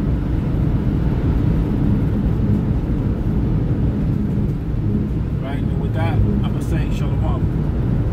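Steady low rumbling background noise, with a few brief higher-pitched chirps between about five and seven and a half seconds in.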